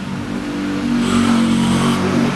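A motor vehicle's engine running steadily and growing louder about a second in.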